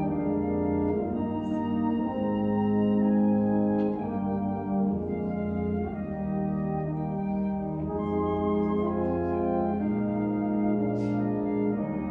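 Concert band playing a slow passage of sustained chords, brass and woodwinds holding notes that move to a new chord every second or two.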